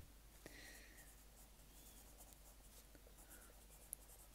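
Faint scratching of a pencil writing on lined notebook paper.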